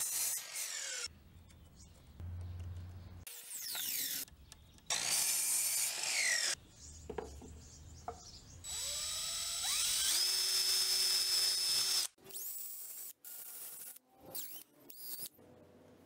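A string of short power-tool clips: a miter saw cutting wood near the start, with a falling whine around the middle, then from about nine seconds a power drill speeding up and running steadily for about three seconds, followed by brief scraps of workshop noise.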